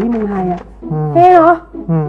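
A man and a woman talking in Thai, with a short, loud, high-pitched vocal outburst about a second in.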